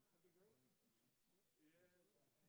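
Near silence, with very faint, distant voices murmuring in the room.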